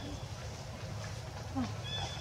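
Baby macaque giving a short, thin, high-pitched cry near the end, over a steady low background hum.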